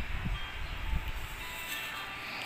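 Handling of a printed paper booklet: a few low bumps as it is moved, then a short paper rustle near the end as the page is turned.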